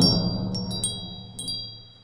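Closing of an intro sting: bright, shimmering chime strikes ring out over a low drone, and the whole sound fades away.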